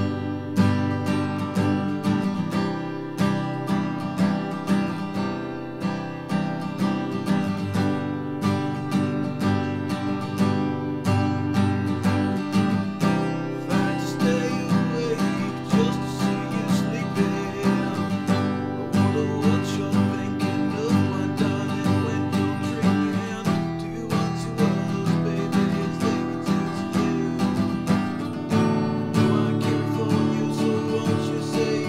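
Acoustic guitar strummed in a steady, even rhythm, with full chords ringing.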